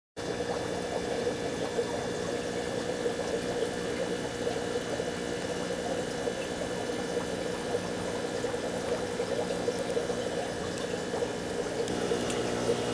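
Aquarium water running and bubbling steadily over a constant hum of tank equipment.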